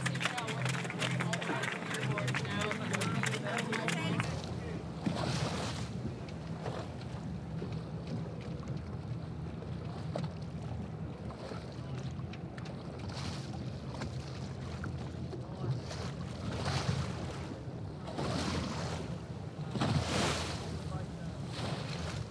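Dockside crowd cheering and shouting for about four seconds, then an abrupt cut to the steady rush of wind and water of a sailboat underway, with a wave washing past every few seconds.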